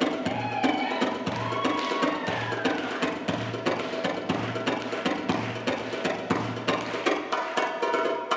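Tabla-solo music: fast darbuka (Egyptian goblet drum) strokes over a low bass pulse about once a second that drops out about a second before the end, with a few sliding melodic notes in the first half.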